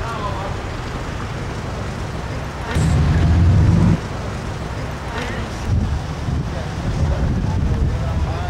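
Outdoor street ambience: a steady rumble of traffic and wind on the microphone, with faint voices. A louder low rumble rises for about a second near the middle.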